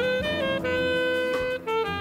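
Live jazz ensemble with a saxophone and brass horn section over piano, guitars, bass and drums, the horns holding long sustained notes. There is a brief break about three quarters of the way through before a new note comes in.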